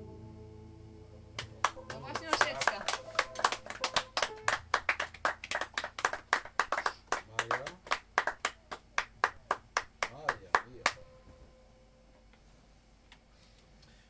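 A piano chord dies away, then a small audience applauds: separate hand claps, clearly distinct from one another, for about nine seconds, stopping abruptly, with a voice or two among them.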